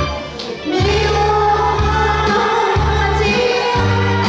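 A woman singing a Korean song through a handheld microphone and PA over amplified backing music with a bass line and a steady cymbal beat. She comes in with long held notes after a short dip about half a second in.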